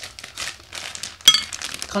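Plastic packaging crinkling as it is handled, with one sharp, loud click about a second and a quarter in.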